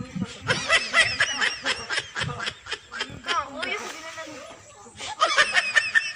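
Several young women giggling and laughing together, in a long run over the first two seconds or so and again near the end, with a few words mixed in.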